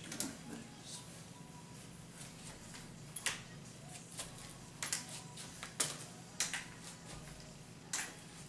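Aluminium underarm crutches clicking as someone walks on them: several sharp, irregularly spaced metallic clicks, mostly in the second half, over a steady low hum.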